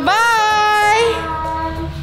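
A child singing a long, drawn-out "bye" on a held note that steps down to a lower pitch about a second in.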